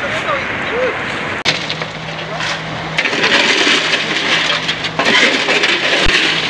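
Rushing floodwater and wind noise on the microphone. About a second and a half in, the sound cuts abruptly to a steady low hum under the noise, which grows louder from about three seconds in.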